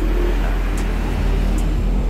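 A steady low rumble that starts suddenly and runs on, with a few faint ticks over it.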